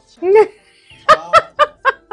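A woman laughing: one short voiced sound, then, about a second in, a quick run of four 'ha' bursts, about four a second.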